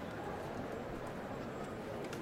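Many feet shuffling and stepping as a procession of robed penitents files past, under a low crowd murmur.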